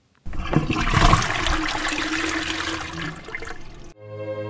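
A toilet-flush sound effect: a rush of water that starts abruptly, is loudest about a second in and dies away over the next few seconds, with a steady low tone in the middle of it.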